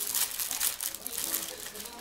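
Thin plastic packaging bag crinkling as it is handled and unwrapped.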